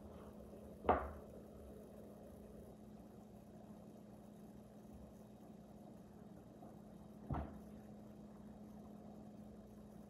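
A rolling pin knocking down onto a cutting board twice, once about a second in and again about six seconds later, over a faint steady hum.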